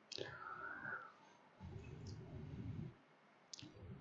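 Quiet room tone on a desk microphone, with a faint click at the start and a short sharp click near the end, typical of computer mouse clicks. In the middle the narrator makes a soft, low murmur under his breath.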